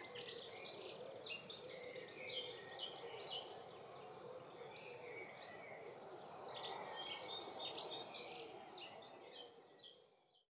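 Small songbirds chirping and singing, many short high calls overlapping, over a steady faint background hum. The chirping thins out in the middle, grows busier again toward the end, then fades out.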